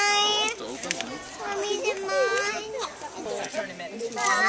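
Children's voices calling and chattering, with one long high-pitched call at the very start and more short calls about two seconds in.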